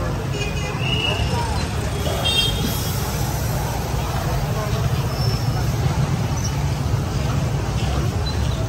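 Steady low rumble of urban background noise, with faint voices and a few brief high toots, one near the start and one about two and a half seconds in.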